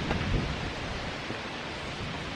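Wind blowing across a handheld phone microphone: a steady rushing hiss with no distinct events.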